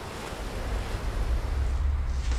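Sea waves washing, an even rushing noise, with a deep low rumble swelling in under it from about half a second in and growing louder.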